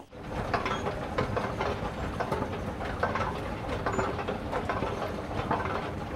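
A steady background din of low rumble with continual light clicks and clatter.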